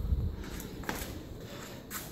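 Faint handling noise with a low rumble at first and a couple of soft clicks as the power window relay is taken out from under the dash.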